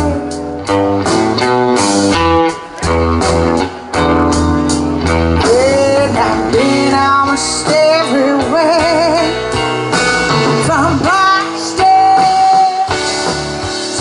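Live blues band playing: a woman singing over electric guitar, bass and drums, with wavering held notes about halfway through.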